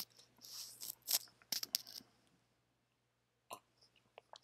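A few faint, short clicks and light handling noises in the first two seconds, then near silence broken by one more small click about three and a half seconds in.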